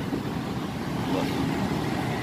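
Road traffic going by: a steady rumble and rush of passing vehicles with no distinct strokes or tones.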